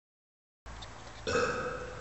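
Dead silence, then faint room noise and, just over a second in, a short steady vocal sound from a person lasting under a second.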